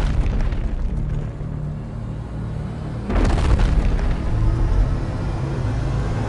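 Cinematic trailer soundtrack: music over a deep low rumble, with a heavy boom hit about three seconds in.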